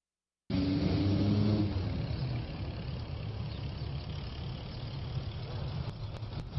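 Motor vehicle engine running nearby over steady street noise, cutting in suddenly about half a second in after a brief silence; the engine note is strongest at first and eases off after a couple of seconds.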